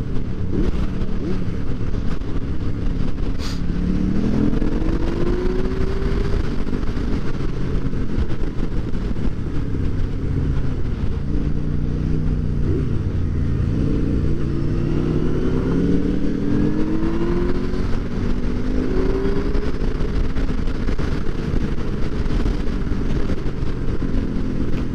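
Motorcycle engine heard from on board while riding, its pitch rising several times as it revs up through the gears.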